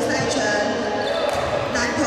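Badminton rally: rackets striking the shuttlecock and players' feet on the wooden court floor, with the voices of a busy sports hall echoing around them.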